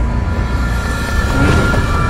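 Cinematic soundtrack sound design: a deep, continuous rumble with several steady high screeching tones layered over it, growing louder toward the end.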